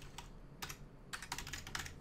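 Typing on a computer keyboard: a short run of keystroke clicks, a few at first, then quicker in the second half, as a word is typed into a command line.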